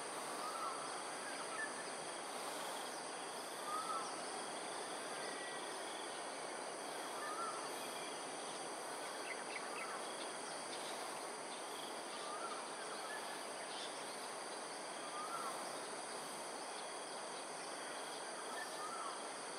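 Steady insect trilling of several high-pitched tones over a continuous background hiss. A short chirp repeats every few seconds.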